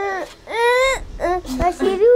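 A child's high voice holding long drawn-out notes, the second rising and then falling away, followed by a few short broken syllables, like the first notes of a song.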